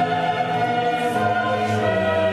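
Music: a choir singing long, held notes.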